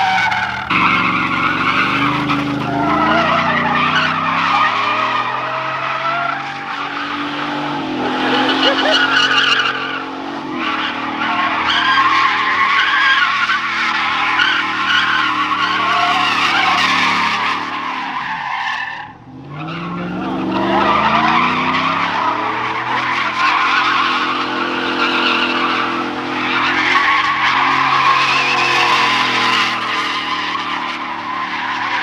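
A Dodge Charger and then a Chevrolet Silverado pickup doing donuts on asphalt: tires squealing continuously while the engines rev up and down. There is a brief drop in sound a little past the middle.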